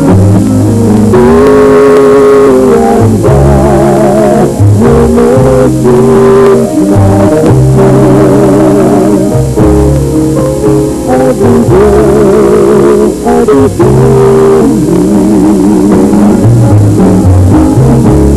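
A man and a woman singing a slow pop duet, backed by a live band of guitar, bass and drums. Long held notes with vibrato run through it.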